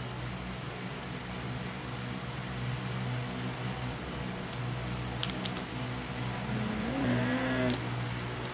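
Electric stand fan running with a steady low hum, and a few faint clicks about midway.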